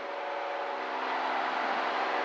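Cockpit drone of a Cirrus SR20's six-cylinder Continental IO-360 engine and propeller at takeoff power during the initial climb, steady and slowly growing louder.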